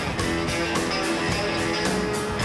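Live rock band playing an instrumental stretch with electric guitar to the fore over a steady, even drum beat.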